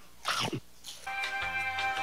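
Background music with held notes and a steady beat comes in about a second in. Just before it there is a short, loud sound that falls steeply in pitch.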